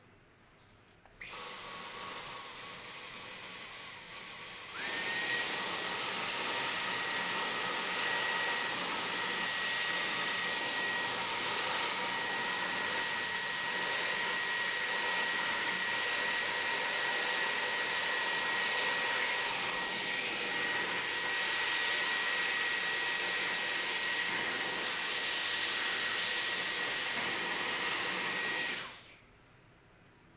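Cordless stick vacuum switched on about a second in, then stepping up to a louder run with a steady high-pitched whine a few seconds later. It runs steadily and then switches off abruptly just before the end.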